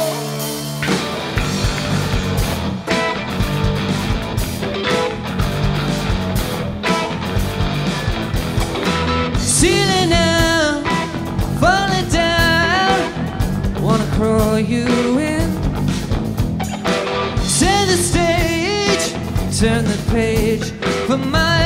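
Indie rock band playing live, with electric guitars, bass, drums and keyboard. A male voice starts singing about halfway through.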